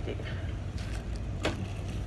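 Steady low hum of the store's background with handling noise as a hand reaches up to a shelf of packaged plastic cups: a faint tap, then a sharp click about one and a half seconds in.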